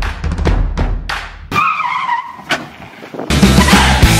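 Backing music with a drum beat, broken about one and a half seconds in by a car's tyres squealing for about a second. Loud distorted rock music cuts in near the end.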